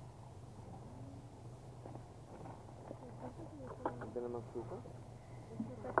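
Indistinct voices talking over the steady low hum of a small boat's motor under way.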